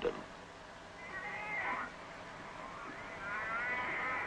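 Two faint, pitched underwater animal calls as heard through submarine sonar: a short arching call about a second in, then a longer, slightly rising one near the end.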